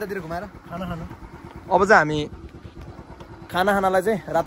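Men's voices calling out in short spells over a motorcycle engine running underneath, with a loud rising shout about two seconds in.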